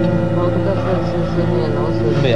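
Orchestral film score playing back, a sustained chord held throughout, with a voice speaking low over it in the middle.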